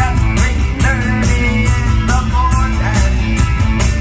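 Live rock band playing loud, with a steady drum beat under bass, and gliding tones that swoop up and down over the top.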